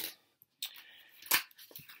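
A mostly quiet stretch with a faint rustle and one brief, sharp crackle about a second and a half in as a sheet of adhesive vinyl decals is handled and lifted off the glass worktop.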